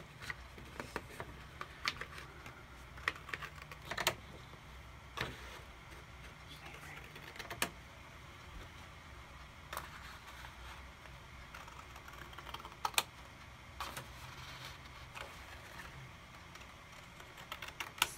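Scissors cutting slowly through a sheet of cardstock, giving a sharp snip every second or so at an uneven pace.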